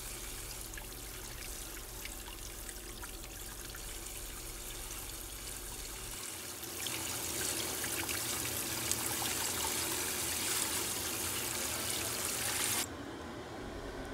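Kitchen tap water running steadily onto a boiled chicken breast and a colander in a stainless steel sink as the chicken is rubbed clean under the stream. The water gets louder about halfway through and cuts off abruptly near the end.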